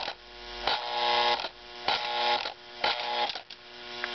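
1953 Lionel automatic milk car's electric mechanism buzzing with AC mains hum from the train's power. The buzz swells and cuts off with a click about five times as the operating button is worked and the car's doors shut.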